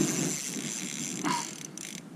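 Spinning reel on an ice-jigging rod giving a steady high whir as line runs through it; the whir stops about a second and a half in.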